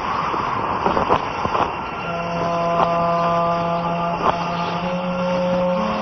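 Film soundtrack: a rushing, wind-like noise with a few sharp hits in the first two seconds, then low sustained tones held together like a drone chord, shifting pitch slightly near the end.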